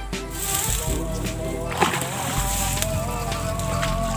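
Background music with a held, wavering melody, and one brief splash or knock of water a little under two seconds in.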